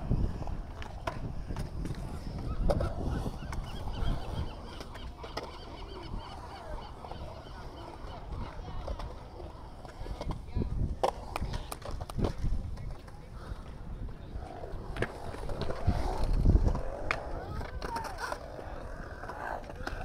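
Skateboard wheels rolling and carving on the concrete of a skatepark bowl, with scattered sharp clacks and knocks from the boards, loudest about three quarters of the way through. Onlookers' voices murmur in the background.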